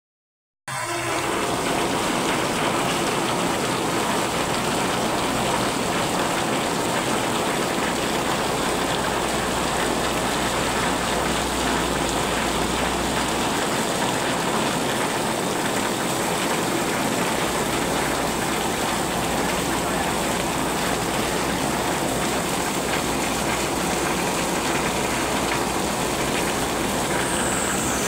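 Heavy tropical downpour: a steady, loud hiss of rain striking the wet street and a parked car, with water pouring off a roof edge. It starts suddenly under a second in, and a low rumble comes and goes beneath it.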